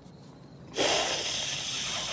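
A loud hissing noise that starts abruptly about three-quarters of a second in and fades slowly.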